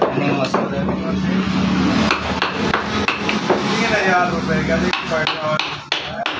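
Wooden mallet striking a carving chisel into a wooden door panel, in irregular sharp taps about two a second, coming quicker near the end. A steady low hum runs underneath and stops about five seconds in.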